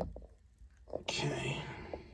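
A short, breathy, whispered vocal sound about a second in, lasting under a second, after a few faint clicks from handling packaging.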